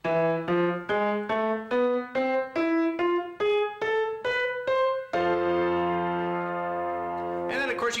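Upright piano playing a steady rising run of single notes, E-F-A♭-A-B-C and then the same again an octave higher, about two to three notes a second. The run lands on a held F chord that rings for about two seconds before it is released.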